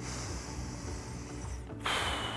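Long, deep breaths close to the microphone, with a second breath starting near the end, over faint background music.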